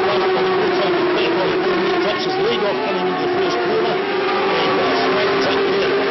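Racing superbike engines running at high revs, a steady, loud drone whose pitch wavers a little as the bikes accelerate and change gear.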